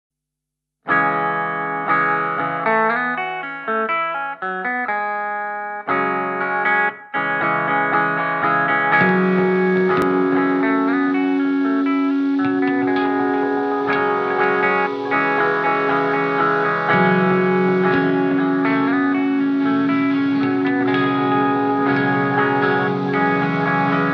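Opening of a metalcore song: an electric guitar picking single notes through effects, starting about a second in, with two short breaks. From about nine seconds, sustained held notes come in under the picking, with no drums yet.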